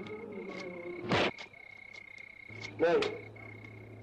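Night-time chorus of frogs or insects, a steady high-pitched trill. About a second in, a short loud vocal outburst cuts across it.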